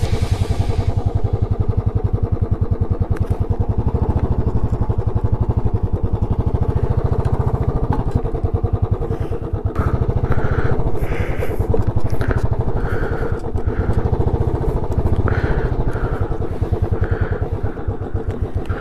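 Motorcycle engine running at low speed with a steady, even beat as the bike rolls slowly over a dirt lot. Short, higher-pitched sounds repeat through the second half.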